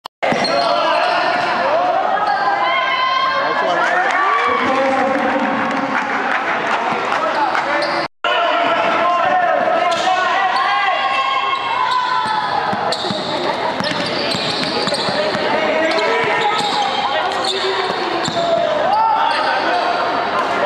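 A basketball bouncing on a court under a loud, steady babble of many overlapping voices, with a brief total dropout about eight seconds in.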